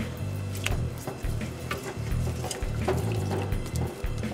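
Small whole potatoes tipped from a mesh bag into a pot of water, splashing and knocking in a scatter of short plops, over background music with a steady bass line.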